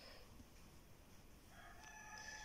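Near silence, then a faint, drawn-out pitched call begins about three-quarters of the way in and holds steady.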